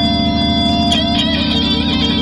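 Electric guitar and electric piano playing live blues on a cheap tape recording. The guitar bends up into a note and holds it for about a second over the piano backing.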